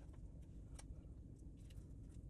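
Near silence, with a few faint light clicks and rustles of small folded paper stars being fished out of a glass jar.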